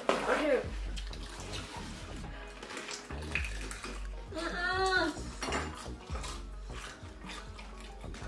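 Eating sounds: gloved hands dipping stuffed peppers into a glass bowl of sauce, with clicks and clinks against the bowl and wet mouth and chewing noises. About halfway through comes a short moan from one of the eaters.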